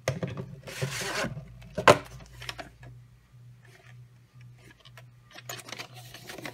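A VHS tape and its plastic case being handled: rustling and scattered plastic clicks, with one sharp snap just before two seconds in.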